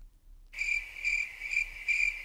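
Cricket chirping, a steady high pulsing trill about three chirps a second, cutting in suddenly about half a second in. It is the stock 'crickets' sound effect used as a joke for an awkward silence.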